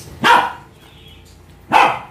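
A dog barking twice, two short loud barks about a second and a half apart.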